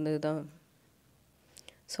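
A woman speaking Tamil, trailing off about half a second in, followed by a short near-silent pause with a few faint clicks before her speech resumes.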